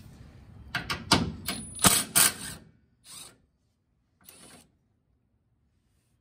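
Hand ratchet clicking in quick bursts for about two seconds as a 12 mm flange nut is backed off a truck frame stud, followed by a couple of fainter clicks.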